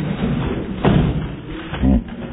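Thud of a skateboarder and his board crashing onto the curved concrete wall of a full pipe, the sharpest hit a little under a second in, with a further knock near the end.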